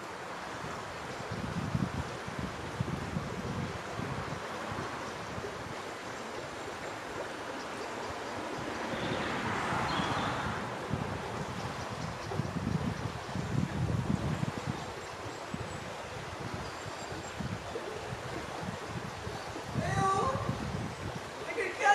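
Wind buffeting the microphone: a steady rushing noise with irregular low gusts, swelling louder about halfway through.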